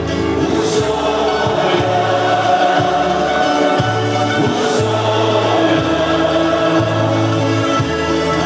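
Portuguese popular folk music with group singing over a steady, bouncing bass line.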